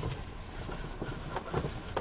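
A sponge scrubbing a metal pot in soapy sink water, with a soft, steady wash of noise and a few faint knocks.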